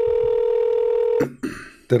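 Telephone ringback tone of an outgoing call being placed: one steady tone that cuts off about a second and a quarter in. A voice comes in near the end.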